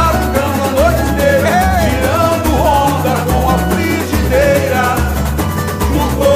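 Samba-enredo (carnival samba) song: a lead singer sings a wavering melody over a band with a steady pulsing bass beat.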